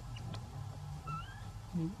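A baby monkey's short, high, squeaky call that rises in pitch, about a second in.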